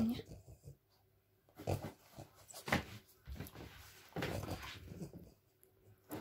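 A French bulldog grumbling in several short bouts, the longest about four seconds in: her protest at a toy pipe she hates.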